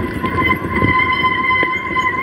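Mountain bike rolling over a dirt road: tyre noise on the loose surface and wind buffeting the camera microphone, with a couple of knocks from bumps. A steady high whine runs underneath.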